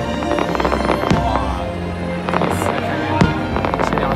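Aerial fireworks bursting in a string of sharp bangs and crackles, thickest in the first second and a half, over loud music.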